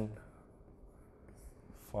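Chalk scratching and tapping faintly on a blackboard as a short word is written by hand.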